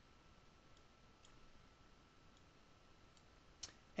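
Near silence: faint room hiss with a faint steady high tone, and a few soft computer mouse clicks, the clearest near the end, as columns are dragged wider in the software.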